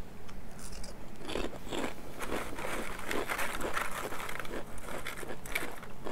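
Tortilla chips from a Lunchables nachos tray crunching as they are bitten and chewed: a dense, irregular run of crunches starting about a second in.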